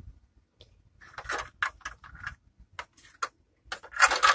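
A run of short, irregular clicks and rustles from things being handled at close range, starting about a second in after a near-silent moment.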